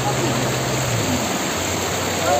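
Floodwater rushing across a street in a steady wash of noise, with the low hum of a front loader's engine running underneath that drops in pitch about a second in.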